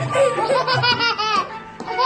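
A toddler laughing, with a quick run of short giggles about a second in, as a husky puppy nuzzles at her neck; background music plays underneath.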